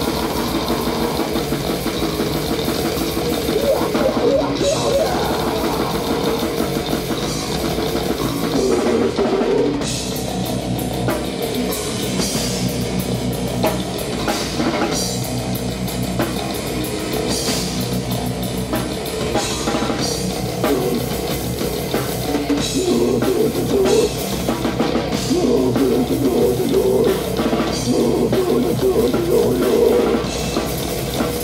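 A metal band playing live at full volume: a Mapex drum kit with continual cymbal crashes, electric guitar and bass guitar.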